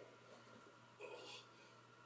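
Near silence: room tone with a steady low hum, and a brief faint hiss about halfway through.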